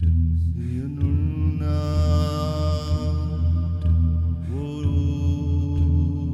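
Meditative chant sung by layered human voices over a steady low drone. A man's voice slides up into a long held note about a second in, rich in bright high overtones, and slides up into another held note near five seconds.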